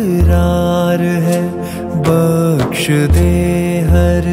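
Devotional naat (dua) recording playing: a male voice holding long sung notes, sliding briefly between pitches, over a deep sustained hum.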